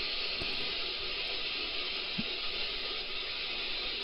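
Shortwave receiver static from a Perseus software-defined receiver in AM mode, fed by a Bonito Boni-Whip active antenna: a steady hiss with no station audible.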